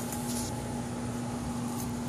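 Steady mechanical hum with a constant low tone, and a brief faint rustle in the first half second.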